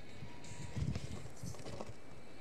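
Radio-controlled rock crawler clambering over rocks: faint, irregular low knocks and scuffs as it climbs.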